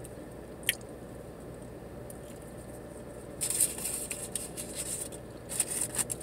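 Close-up eating sounds: a bite of a breakfast burrito and chewing, with a single click about a second in. In the second half come bursts of rustling from the paper-wrapped plastic parfait cup and spoon, over a low steady hum.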